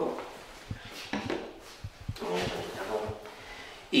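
A few light knocks and some rubbing as a PVC pipe and a cloth are handled on top of a wooden barrel.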